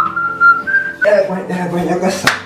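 Someone whistling a short two-note whistle lasting about a second: it slides up into a held note, then steps up to a slightly higher note and stops.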